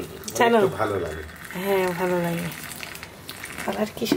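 Boiled water poured from an aluminium pot into mugs, a faint trickle under a voice that speaks and holds a note in the first half.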